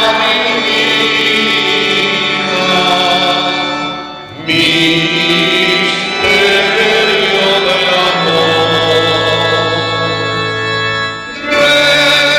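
Voices singing a slow devotional hymn in long held notes, with brief breaks between phrases about four seconds in and again near the end.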